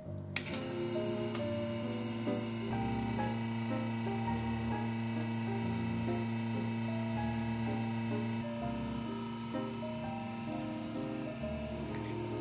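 The vacuum pump of a conservator's vacuum hot table switching on and running with a steady hum and hiss while drawing a plastic membrane down over a painting. The hiss drops partway about eight seconds in. Background music plays throughout.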